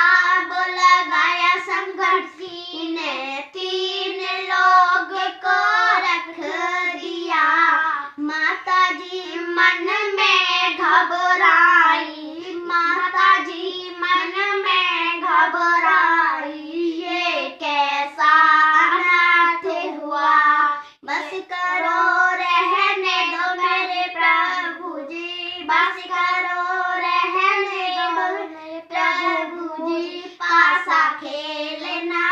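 Two young girls singing a Hindi devotional folk song together, unaccompanied, with a brief pause for breath about twenty seconds in.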